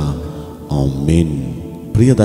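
A man's voice talking in Telugu over background music, with a held steady note underneath. There is a short break in the voice in the first half-second or so.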